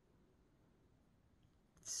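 Near silence: room tone, with a woman's voice starting to speak right at the end.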